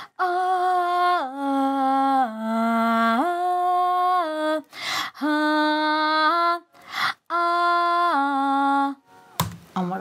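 A woman singing a wordless harmony line on long held 'ah' notes, in three phrases whose notes step down and then back up in pitch. There are quick breaths between the phrases, about five and seven seconds in.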